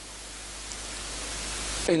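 Steady hiss of the recording's background noise, growing gradually louder through a pause in speech and cutting off abruptly near the end.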